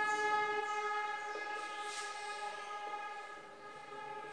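A long, steady horn blast held on one pitch, loud at first and slowly fading. Faint scratches of a marker writing on a whiteboard are heard alongside.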